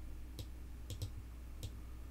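Computer mouse clicking four times, two of the clicks in quick succession, over a steady low electrical hum.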